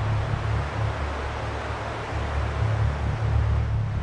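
Beach ambience: a steady rush of wind and sea surf, with a fluctuating low rumble of wind buffeting the microphone.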